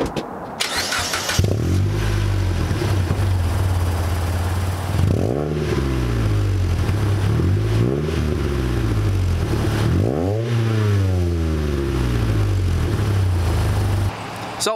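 Mitsubishi Lancer engine started through its exhaust: a brief starter whir about a second in, then the engine catches and idles. It is revved several times, the pitch rising and falling with each blip, the biggest rev near two-thirds through, before settling back to idle.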